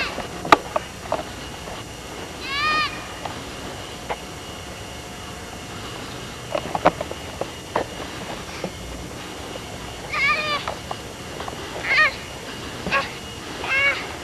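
Short high-pitched calls, each rising and then falling in pitch, heard four times (once near the start and three times in the last few seconds), among a few light clicks and knocks.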